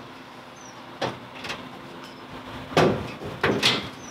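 Steel hood of a 1967 Ford Country Squire being unlatched and raised: sharp clicks from the latch release about a second in, then louder metal clunks and a creak as the hood swings up on its hinges near the end.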